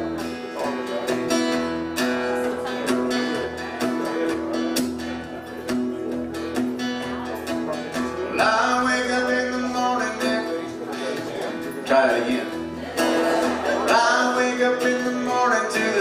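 Solo acoustic guitar playing the opening of a country song, with steady pitched notes throughout. A man's voice comes in singing over the guitar about halfway through.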